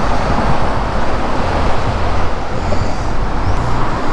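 Road traffic on a highway interchange: a loud, steady rush of passing vehicles with a deep rumble underneath.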